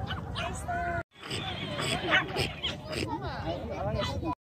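Young children's voices, several at once, chattering and squealing in high calls without clear words. The sound cuts out completely for a moment about a second in.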